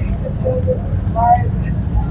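Outdoor street ambience: a steady low rumble, with a few brief voice fragments from people nearby.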